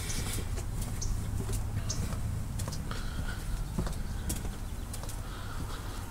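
Footsteps on paving and handling noise from a handheld camera while walking, scattered soft clicks over a low steady rumble.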